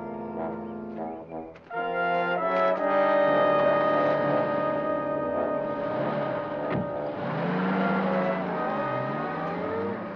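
Dramatic background score with brass holding long chords. It drops briefly and comes back louder about two seconds in.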